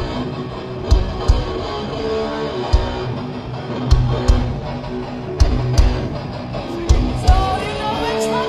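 Heavy metal band playing live through a festival PA: distorted electric guitars and bass holding notes over heavy, unevenly spaced drum hits. A wavering sung note comes in near the end.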